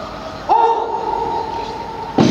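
Massed troops' drawn-out shout of "ura" (hurrah), one long call that swells at its start about half a second in and is then held steady.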